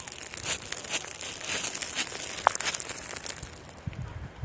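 Close crackling and crinkling noise, a dense run of small clicks over a high hiss, typical of hands rubbing on the recording phone's microphone. A brief thin tone sounds once about halfway through.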